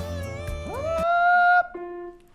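A cappella vocal music with a low bass line. About half a second in, a male voice slides up to a high F5 and holds it for about a second, then breaks off near the end, leaving a faint lower tone.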